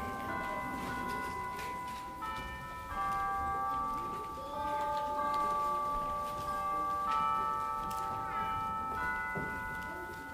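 Slow instrumental music in high, held chords that change every second or two, with a faint room murmur beneath.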